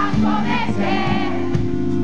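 Rock band playing live, heard from within the crowd: a sung vocal line over held electric guitar chords, with a drum hit about a second and a half in.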